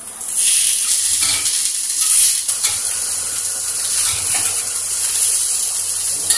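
Appe batter balls sizzling in oil in an appe pan over a gas flame, a steady hiss, with a few light scrapes and taps as the balls are turned over with a spoon to cook the other side.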